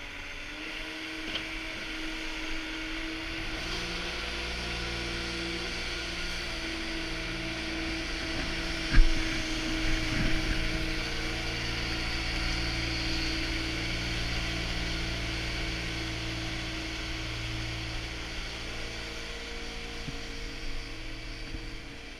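Propane-fuelled ice resurfacer's engine running steadily as the machine passes close by, getting louder about four seconds in. A sharp thump about nine seconds in is the loudest moment.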